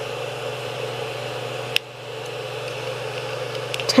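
Creality CR-10 3D printer's hotend cooling fan running with a steady whir. A sharp click comes a little under two seconds in, and a few faint ticks come near the end.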